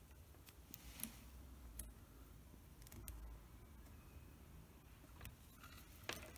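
Near silence, broken by a few faint ticks of multimeter probe tips touching the motor's terminal studs, the sharpest about a second in.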